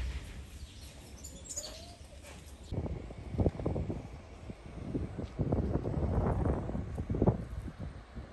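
Birds calling faintly outdoors, then from about three seconds in a louder, uneven low rumbling noise that surges irregularly.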